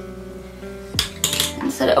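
A few small hard clicks and a brief clatter starting about a second in, from a plastic pregnancy test being set down and its cap put over it.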